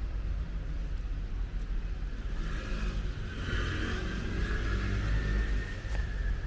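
Steady low rumble with the sound of a passing vehicle that grows louder in the second half.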